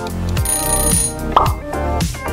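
Background music with a steady beat, about two beats a second. About half a second in, a high ringing tone sounds for under a second, followed by a short, sharp sound effect.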